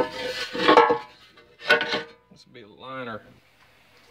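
Metal scraping and clattering as a cast iron hibachi grill is handled on a workbench, in a burst through the first second and another shorter one near 1.7 s. A man's brief drawn-out 'uhh' follows about three seconds in.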